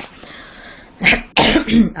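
A person coughing and clearing their throat: about a second of breathy rush, then two short voiced bursts.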